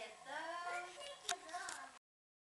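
High, sing-song vocalising from a young child, with other voices, and one sharp click a little past halfway. The sound cuts off suddenly at the end.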